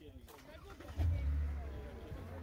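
An SUV's engine starting: a sudden low rumble about a second in that drops back to a lower, steady running sound.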